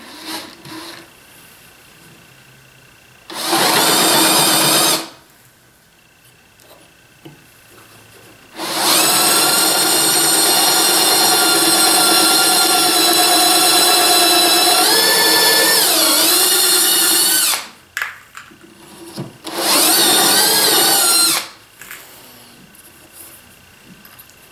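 Bosch cordless drill boring a hinge-pin hole about an inch deep through a guide bushing into a wooden box lid. The motor whines steadily in three runs: a short burst a few seconds in, a long run of about nine seconds whose pitch sags briefly under load and recovers, and a second short burst near the end.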